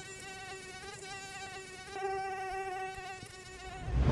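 Mosquito wing whine: a steady, high buzzing hum whose pitch wavers slightly, swelling a little about halfway through.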